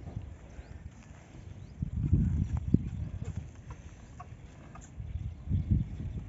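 A Bhagnari bull's hooves stepping and shuffling on dry dirt: two short spells of low thuds, about two seconds in and again near the end, with one sharper knock.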